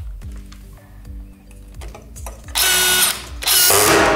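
DeWalt cordless screw gun running, driving a wood-point roofing screw through a metal roof clip into a wood deck: a steady motor whir, then two much louder stretches in the second half as the screw is driven in.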